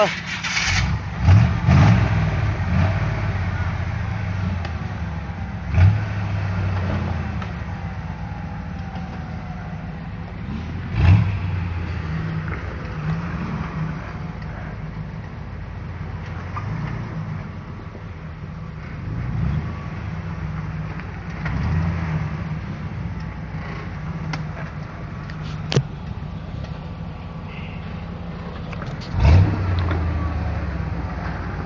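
Off-road vehicle engine running at low speed and revving up and down in bursts as it crawls over rocks, with a few sudden knocks of tires and underbody against rock.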